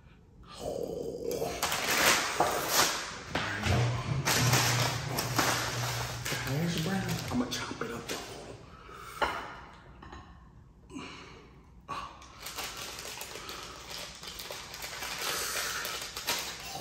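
Paper food wrappers crinkling and rustling as fast-food breakfast items are unwrapped by hand and set on a plate, in short repeated bursts, with a man's low wordless voice for a few seconds in the middle.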